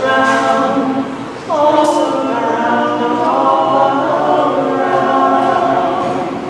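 A woman singing unaccompanied in long held notes, with a new phrase starting with an upward slide about a second and a half in.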